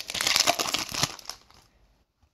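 Crackly crinkling of a hockey card pack's wrapper being opened and handled. It stops about a second and a half in.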